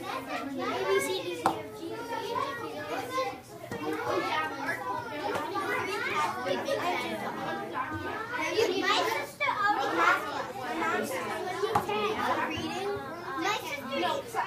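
Many third-grade children talking at once in small groups at their tables: a steady, overlapping chatter of kids' voices.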